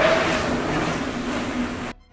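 Steady rushing noise of a mountain bike's tyres rolling over the packed-dirt pump track, cutting off suddenly near the end.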